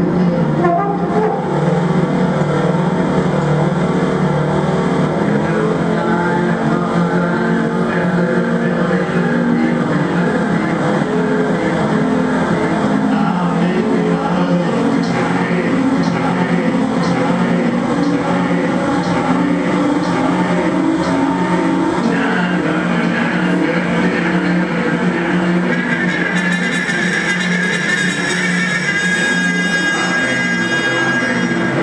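Live experimental noise improvisation on a keyboard, hand-held electronics and trumpet: a dense, steady drone of many overlapping tones. A fast, high pulsing comes in near the end.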